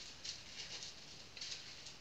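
Small plastic zip bags of diamond painting drills rustling and crinkling as they are scooped up by hand, in a few short faint bursts.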